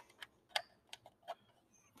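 About five light, irregular clicks from a handheld plastic radiation survey meter as its battery cover is slid shut and the unit is handled.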